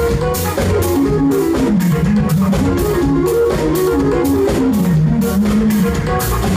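Live band playing a groove that mixes electronic music, jazz and hip hop: drums keep a steady beat with regular cymbal strokes under keyboards and a melodic line that slides up and down.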